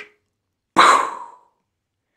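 A single imitated gunshot, a sharp burst about three-quarters of a second in that dies away within about half a second, standing for shooting the deer.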